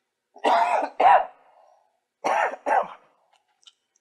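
A man coughing into his hands: a pair of coughs about half a second in, then a second pair a little past the two-second mark.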